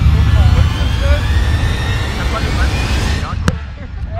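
Heavy wind rumble on the microphone, with one sharp slap about three and a half seconds in as the large inflatable gymnastics ball is struck.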